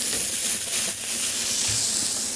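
Scampi sizzling in olive oil in a hot frying pan, a steady high hiss.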